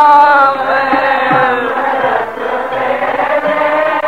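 Sikh devotional kirtan: a wavering held sung note, then voices chanting together over musical accompaniment.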